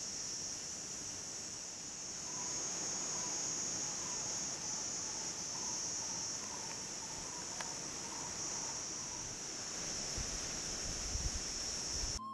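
Steady, high-pitched insect chorus of tropical cicadas or crickets, with faint short repeated notes through the middle and a few low bumps near the end.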